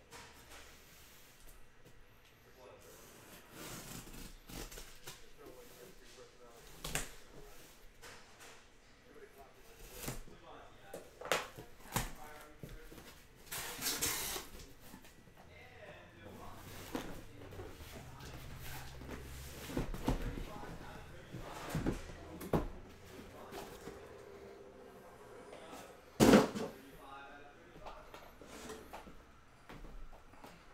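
A cardboard case of trading-card hobby boxes being opened and the boxes slid out and set down: scattered knocks and cardboard scrapes, a longer rustling scrape midway and one loud knock late on.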